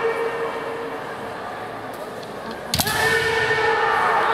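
Kendo kiai: a long, held shout from a fencer fades early on; nearly three seconds in, a sharp crack of a bamboo shinai striking is followed at once by another long, steady kiai.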